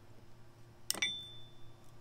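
Two sharp clicks close together as the electric trailer jack is handled in its box. The second is a clink that rings on briefly at a high pitch.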